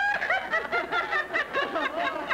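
A person laughing in a run of short chuckles.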